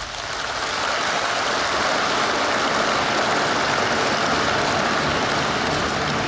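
Large audience applauding, swelling over the first second and then holding steady.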